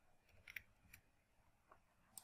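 Near silence with a few faint computer keyboard clicks, about half a second and one second in, as a dimension value is typed in.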